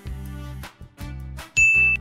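Soft background music, then about one and a half seconds in a loud, bright ding chime rings on one steady note for about half a second, signalling the reveal of the quiz answer.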